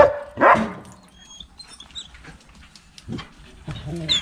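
Belgian Malinois puppies barking: two short, loud barks about half a second apart at the start.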